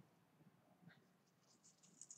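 Near silence, with a faint tick a little under a second in and a faint dry rustle in the second half as fingers pinch coarse salt from a small glass jar.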